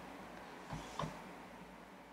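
Quiet room tone in a pause between speech, with two faint soft clicks close together near the middle.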